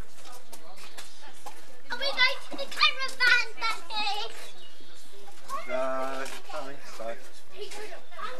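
Children's voices calling and shouting as they play, with a few loud, high-pitched shouts about two to four seconds in and one drawn-out call shortly after.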